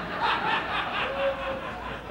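Audience laughter, a mass of laughing voices.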